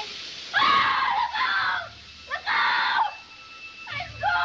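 A woman's high-pitched, wavering screams from a witch in a film melting away: her dying cries. There are two long cries, the first about half a second in and the second about two and a half seconds in.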